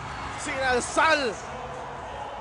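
A sports commentator's excited shout over the steady noise of a packed basketball arena crowd.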